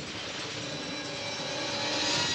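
A steady rushing noise with faint held tones underneath, swelling gradually to its loudest near the end, like a rising sound-effect swell in a film soundtrack.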